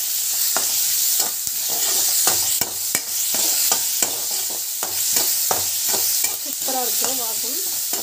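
A spatula stirring chopped onions in a wet white mixture in a hot frying pan: steady sizzling, with frequent quick clicks and scrapes of the spatula against the pan.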